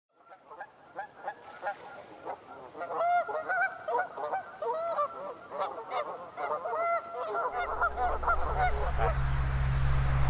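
A flock of geese honking, many short calls overlapping and growing louder. A steady low hum comes in about three-quarters of the way through.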